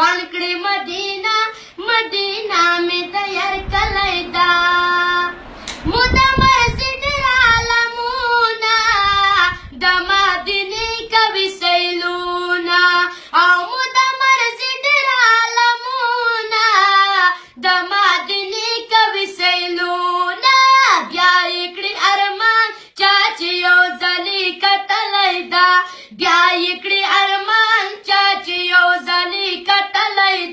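A boy singing a Pashto naat with no instruments, one voice carrying a devotional melody in long held, wavering notes. A low rumble sits under the voice for a few seconds around five to nine seconds in.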